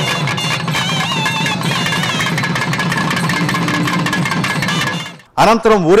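Traditional South Indian temple music: a wavering, ornamented wind-instrument melody over fast, steady drumming. It breaks off about five seconds in, and a man's narration begins.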